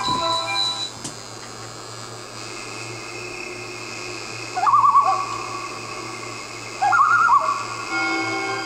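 Soft production-logo music with a faint held tone, played back through a laptop's speakers, with two short warbling, whistle-like calls, one about halfway through and one near the end.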